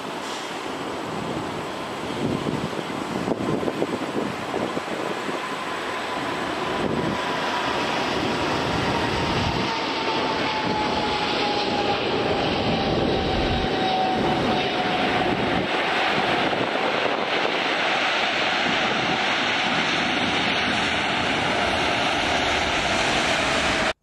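Boeing 747-8 freighter landing, its four GEnx jet engines giving a steady roar that grows louder about eight seconds in and stays loud through the rollout. A whine slides slowly down in pitch over the second half.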